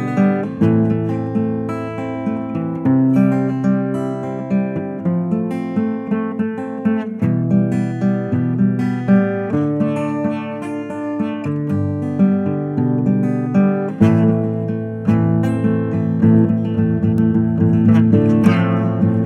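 Acoustic guitar playing an instrumental break in a folk song, strumming and picking chords with no singing.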